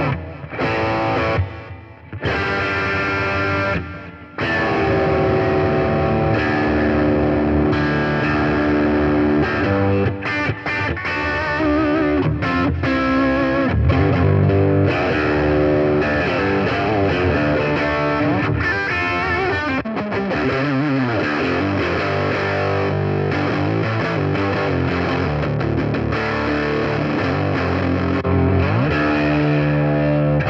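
Electric guitar played through a Zoom G3Xn multi-effects unit on distorted presets, from Hard Rock at the start to MS.Mudd by the end, playing chords and riffs. There is a short break about four seconds in, then continuous playing.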